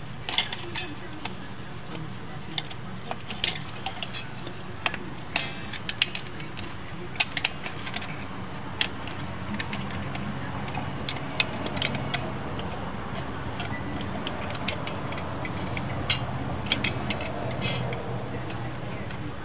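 Small metal drum brake parts clicking and clinking irregularly as the self-adjuster cable and spring are fitted by hand to a brake shoe, over a steady low hum.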